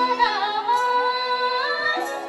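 A woman sings a folk song into a stage microphone, holding one long high note that dips and bends early, steadies, then rises near the end. The low backing instruments fall away beneath her while she holds it.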